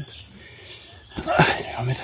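Steady, high-pitched chirring of crickets in the background; a little past a second in, a short voiced exclamation from a man cuts over it.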